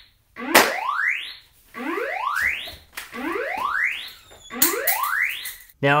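Lighthouse AI security camera's siren sounding: a whooping tone that sweeps steeply upward and cuts off, repeating about once a second.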